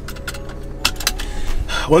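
Cabin noise of a BMW E36 M3 on the move, its S52 straight-six and the road giving a steady low hum. A few light clicks come about a second in.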